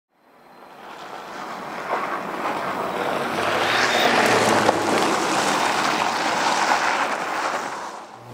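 Steady rushing din of a coal mine's surface plant and conveyors running, fading in over the first couple of seconds.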